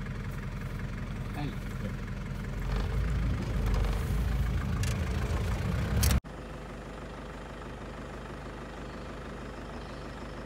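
A vehicle engine idling with a steady low hum that grows louder from about three seconds in. It breaks off suddenly about six seconds in and gives way to a quieter, steady engine drone.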